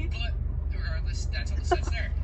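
Steady low rumble of a car running, heard from inside the cabin, with a brief voice sound just before the end.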